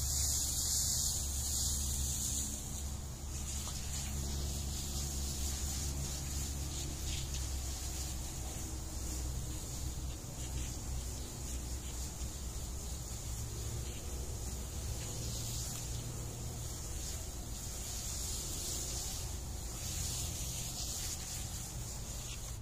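Garden hose spraying water in a fine mist onto a bed of calcined clay mulch, a steady hiss over a low rumble.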